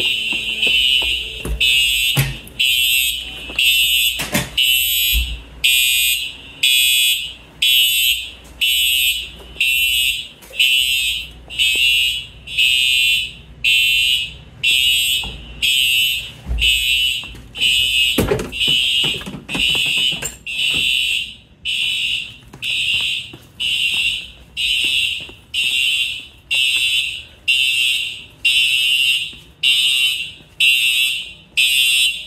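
Simplex TrueAlert fire alarm horns sounding in a steady slow march time pattern, about one half-second blast a second rather than the three-pulse temporal code. This is a fault on the notification circuit, which the technician guesses comes from a short on signal circuit 5 or a bad 4009 power supply. A few sharp knocks come in between the blasts.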